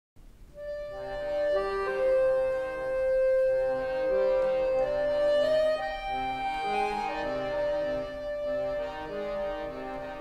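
Accordion music: a slow melody of long held notes over sustained chords.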